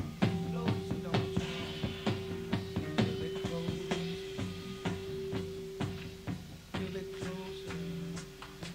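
Rock band playing live in a club, heard on an audience cassette recording: the drums keep a steady beat of about two hits a second under a long held note, and the music eases off in loudness toward the end.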